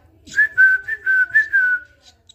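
A nestling songbird begging for food: a quick run of about six high, thin cheeps, the last one drawn out and falling slightly.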